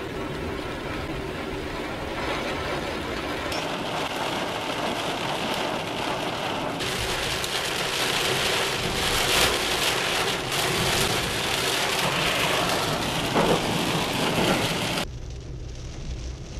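Heavy downpour drumming on a car's roof and windshield, heard from inside the car. It is a steady rush that grows louder in the second half and drops sharply about a second before the end.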